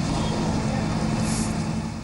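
Steady street background noise of road traffic, with a vehicle engine running underneath as a low hum.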